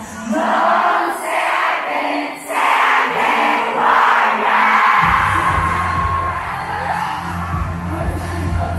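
Pop music over the hall's sound system with a large crowd singing and yelling along. The bass is cut for the first five seconds, with the crowd's voices in phrases, and comes back in about five seconds in.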